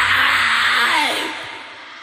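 The last sustained harsh noise of a live heavy metal song. The low end dies away first, there is a brief falling pitch glide about a second in, and the whole sound fades out over the next half second or so.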